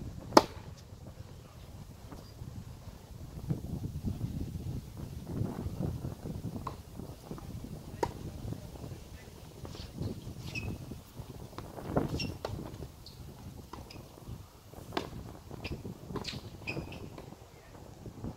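Tennis ball struck sharply by a racket just after the start, the loudest sound, followed by scattered quieter ball hits and bounces on the hard court. A low rumble of wind on the microphone runs underneath.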